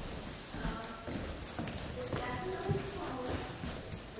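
Footsteps of hard-soled shoes clicking on a hardwood floor, about two steps a second, with voices talking quietly alongside.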